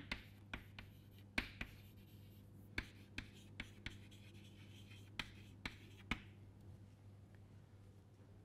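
Chalk writing on a chalkboard: a string of sharp taps and short scratches as words are chalked, stopping about six seconds in. A faint steady hum lies underneath.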